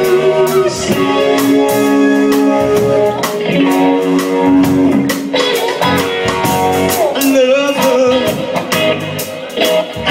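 Live rock band playing a reggae-feel groove: electric guitar holding and bending long notes over bass guitar and a steady drum beat.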